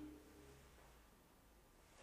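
Near silence: room tone, with a faint low tone dying away in the first half second.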